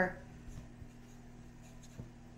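A woman's last word trails off, then a quiet small room with a faint steady low hum and a few soft faint ticks of handling noise.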